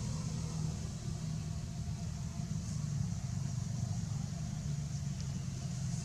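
A steady low rumble like a motor running at idle, with a steady high-pitched hiss above it.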